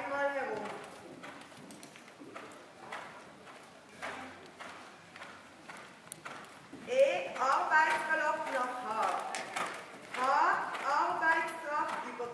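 Dull, regular hoofbeats of a horse moving on the sand footing of an indoor riding arena, with a person's voice speaking over the second half.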